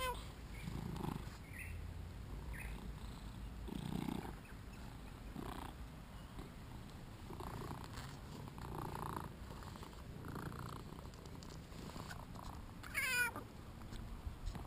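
British Shorthair cat purring steadily close to the microphone while being petted. A brief high, wavering call sweeps down in pitch at the start and again, louder, about a second before the end.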